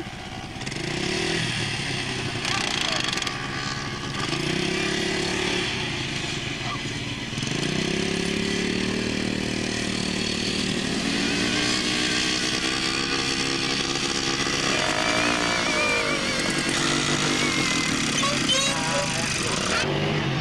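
A quad bike (ATV) engine running as it rides across sand, its note rising and falling with the throttle. Around the three-quarter mark the pitch sweeps down as it passes close by.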